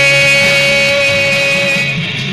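A male singer holding one long note into the microphone over a guitar accompaniment. The note ends just before the end.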